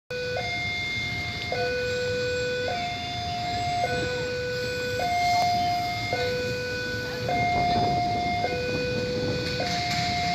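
Railway level-crossing warning alarm sounding: an electronic two-tone signal alternating steadily between a low and a higher tone, each held about a second, warning of an approaching train.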